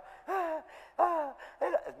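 A person's voice making two short, breathy vocal sounds, each falling in pitch, less than a second apart.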